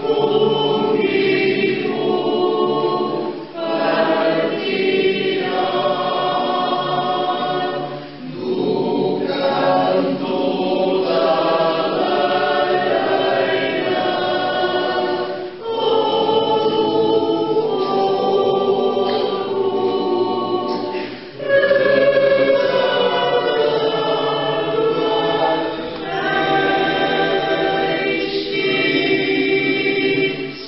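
Polyphonic choir singing a Portuguese Christmas song in several voice parts, in phrases with short breaks every few seconds.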